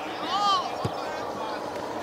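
Football pitch during a youth match: a faint, high-pitched shout about half a second in, and a single dull thud of a football being kicked just under a second in.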